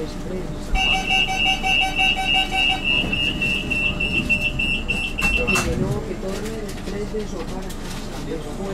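Cercanías commuter train's door-closing warning: a run of rapid high-pitched beeps, about four a second, lasting roughly five seconds and ending in a knock. Low voices follow.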